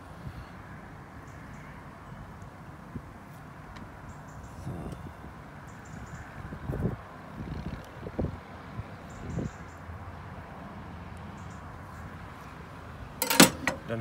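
A chef's knife scoring a raw salmon fillet, pressing through the flesh with a few soft knocks on a plastic cutting board, over a steady outdoor background hiss. Near the end, a sharp clatter as a glass jar is picked up.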